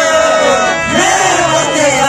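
Qawwali singing: men's voices hold a long, wavering line together over the steady chords of a harmonium.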